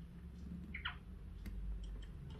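African grey parrot giving one short, soft squeak that slides down in pitch a little under a second in, followed by a few faint clicks.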